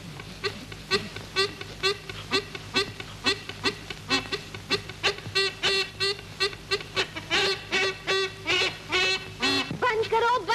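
Snake-charmer's pungi (been) playing a fast, nasal, reedy tune of short repeated notes, about three to four a second, over a steady held drone note.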